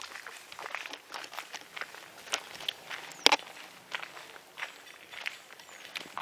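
Footsteps walking outdoors, a run of irregular scuffs and crunches, with one sharp knock about three seconds in.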